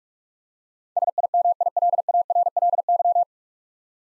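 Computer-generated Morse code at 45 words per minute, a single steady tone keyed in quick dots and dashes. Starting about a second in, it sends the whole word SIMILARLY in a little over two seconds.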